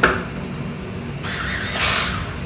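Electric handheld bottle-capping tool's motor run briefly: a hissing whir starts about a second in and grows louder near the end, after a click at the start.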